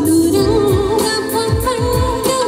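A woman singing a song into a stage microphone over an amplified backing track with a steady drum beat; her held notes carry a wavering vibrato.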